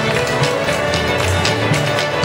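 A large group of fiddles playing a traditional fiddle tune together, with strummed guitars and a steady percussive beat underneath.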